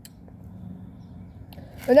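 Faint steady low background noise with no distinct event, then a boy's voice begins speaking near the end.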